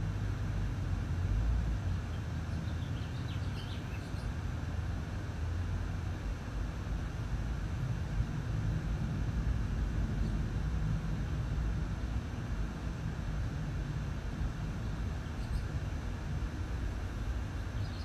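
Steady low rumble of outdoor background noise, with a few faint high chirps about three seconds in and again near the end.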